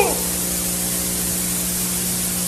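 Steady hiss with a low steady hum underneath: the background noise of the recording during a pause in speech.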